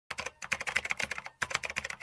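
Fast typing on a computer keyboard: a rapid run of key clicks, broken by two short pauses.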